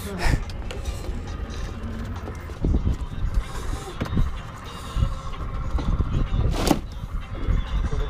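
Wind buffeting the microphone on an open boat deck, a loud uneven rumble, with knocks and thumps from handling gear and a sharp knock near the end.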